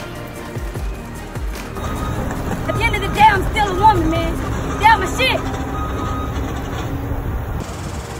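Background music with a raised, high voice over it in short, unintelligible cries, from about two seconds in until shortly before the end.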